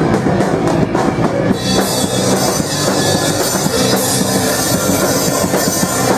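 A live punk rock band playing loud and fast, led by the drum kit. About a second and a half in, the cymbals start crashing continuously and fill the top of the sound.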